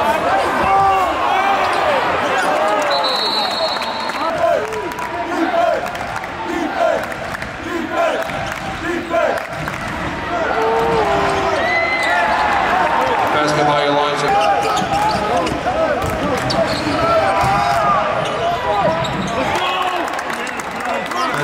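Live basketball game sound on a hardwood court: many short sneaker squeaks, the ball bouncing, and players' voices calling out. There is little crowd noise.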